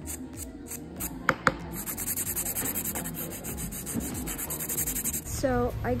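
A nail buffer block rubbed quickly back and forth over a false fingernail, a fast run of rasping strokes, with two sharp clicks a little over a second in. The strokes stop near the end, where a woman starts talking.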